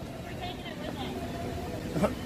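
Faint, distant voices talking over a steady low rumble of city street noise.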